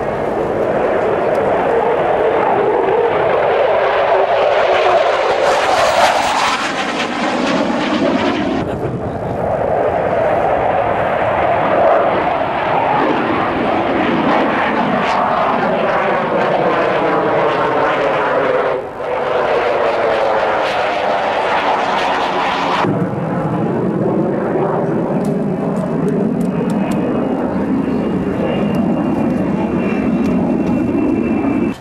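A military jet fighter flying display passes: loud jet engine noise with slow sweeping rises and falls in pitch, cutting off suddenly about nine seconds in and again near 23 seconds. After that, a Boeing E-3 Sentry AWACS, a four-engine jet, flies over with a steady high whine.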